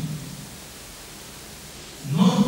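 A pause in amplified speech, filled only by a steady hiss of room and recording noise. The tail of the voice fades out right at the start.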